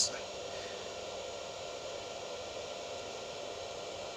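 Steady background hiss with a faint, even hum that does not change in pitch or level.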